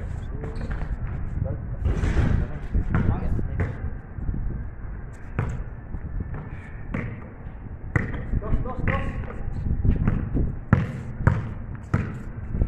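A basketball bouncing on a paved court during a pickup game: irregular sharp bounces throughout, with the loudest pair near the end, over players' voices.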